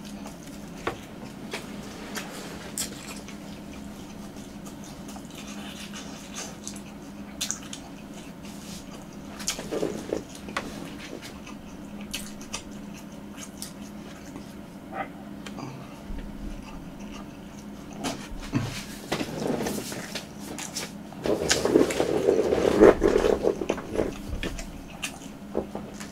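Close-miked chewing of a fried twisted-doughnut hot dog with sausage: small wet clicks and smacks of the mouth, with a louder stretch of chewing a few seconds before the end. A steady low hum runs underneath.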